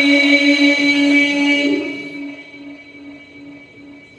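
A man's voice holding one long, steady note of Quran recitation, which fades away over the last two seconds.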